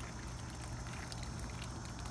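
Goldfish splashing and gulping at the water's surface as they feed on floating fish food: a steady patter of many small, quick splashes.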